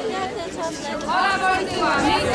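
People talking, with overlapping chatter.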